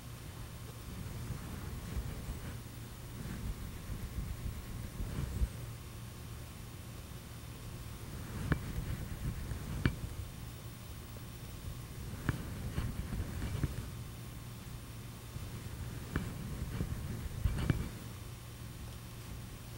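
Quiet room tone with a steady low hum and a handful of faint ticks and rustles from a paintbrush dabbing oil paint onto a canvas.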